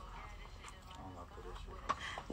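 Quiet booth room tone with a steady low hum and a faint voice in the background, then a short click just before the end.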